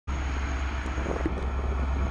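M62M diesel locomotive hauling a freight train, its diesel engine a steady low rumble as it approaches.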